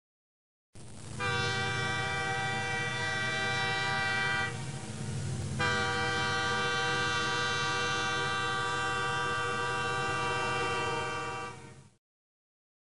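Train whistle blowing two long, steady blasts over a low rumble of a moving train: the first lasts about three seconds, and the second, after a short break, runs about six seconds before fading out.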